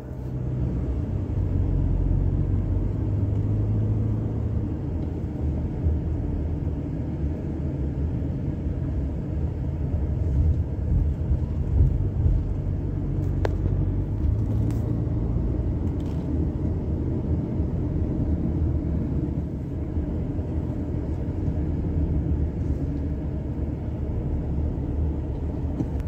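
A car driving, heard from inside the cabin: a steady low rumble of road and engine noise, with a few faint clicks.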